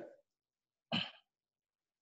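A person clearing their throat once, briefly, about a second in.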